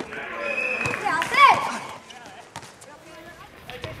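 Men's shouts during a five-a-side football game in the first half, then a quieter stretch of scattered knocks from the ball being kicked and bouncing on the concrete court and running footsteps.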